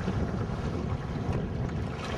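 Wind buffeting the microphone as a steady low rumble, over the wash of choppy waves.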